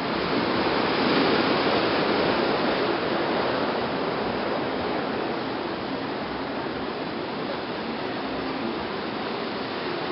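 Ocean surf breaking on rocks below a cliff: a steady wash of noise that swells a little in the first few seconds.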